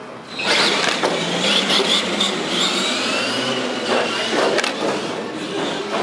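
RC Clod Buster monster trucks driving, their electric motors and gearboxes whining and rising and falling in pitch as they speed up and slow down. The sound starts abruptly about half a second in.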